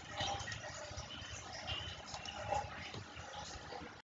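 Faint background room noise with a low rumble and scattered soft, indistinct sounds.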